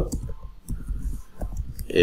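Computer keyboard being typed on: a run of quick, irregular key clicks.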